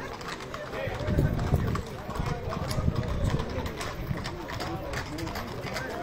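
Horses' hooves clip-clopping on a paved road as a column of riders walks past, under people talking.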